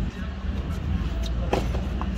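A tennis ball struck once by the far player's racket, a single sharp pock about one and a half seconds in, over a steady low outdoor rumble.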